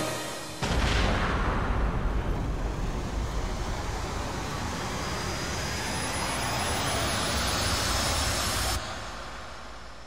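Rocket-launch, warp-speed sound effect: a loud, dense rushing noise that starts about half a second in, with a faint whistle slowly rising in pitch, then cuts off suddenly near the end.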